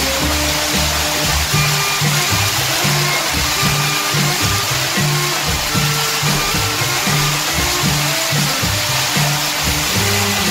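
Background music with a rhythmic line of low notes, over the steady rush of water pouring off a stone spout and falling down a rock wall.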